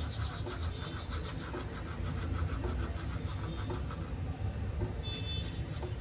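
Toothbrush scrubbing the tongue through a mouthful of foamy toothpaste: quick wet strokes about five a second that fade out about halfway through, over a steady low rumble.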